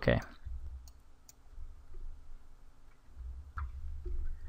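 A few faint computer mouse clicks, the clearest near the end, over a low steady hum of room and microphone noise.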